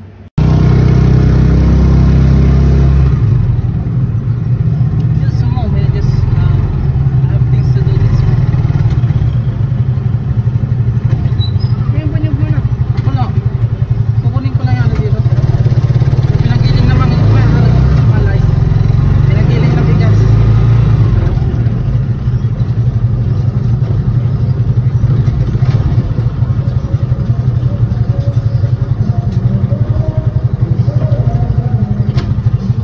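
Small motorcycle engine running steadily while riding, a loud low rumble that cuts in suddenly about half a second in.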